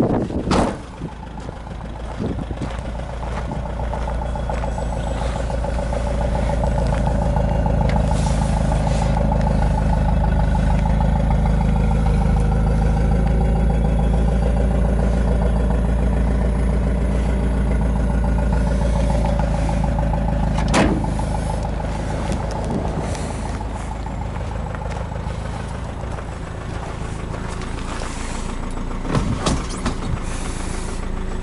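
Nissan Figaro's 1.0-litre turbocharged four-cylinder engine idling steadily. A few sharp clunks break in: near the start, a loud one about two-thirds of the way through, and near the end.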